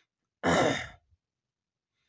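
A person's sigh close to the microphone: one loud, short breathy exhale about half a second in, fading out within half a second.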